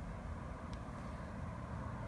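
Steady low background rumble with a faint higher hiss, and one faint short click about three-quarters of a second in.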